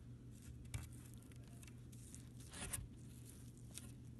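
Quiet room tone with a steady low hum and faint handling rustles, with soft scrapes about three-quarters of a second in and again past the middle.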